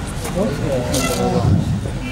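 Indistinct speech and voices in a pause between the two speakers, no clear words.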